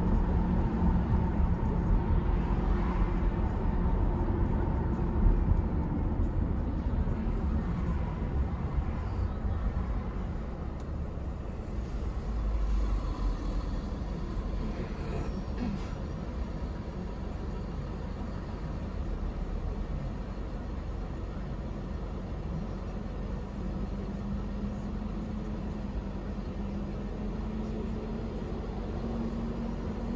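Car road and engine noise: a low rumble while driving that drops after about ten seconds as the car slows and stops, then a lower steady noise while it waits at the light.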